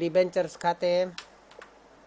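A voice speaking for about a second, then quiet, with a few computer keyboard clicks.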